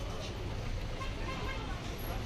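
Busy street background: a steady traffic rumble with voices in the background.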